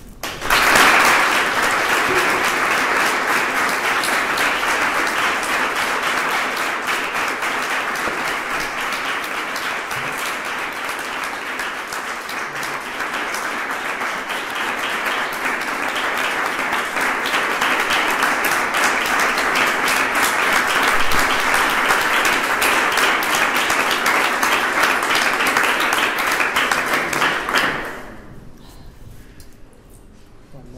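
Audience applauding at the end of a talk, a long run of many hands clapping that starts abruptly, eases a little midway, builds again and stops near the end.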